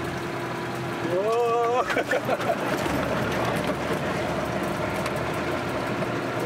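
Willys jeep's four-cylinder engine running as the jeep drives, heard from inside the cab, with rougher driving noise from about two seconds in.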